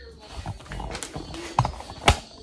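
Handling noise from a phone being picked up and moved: rubbing and rumble, with a few light knocks about a second in and again near the end.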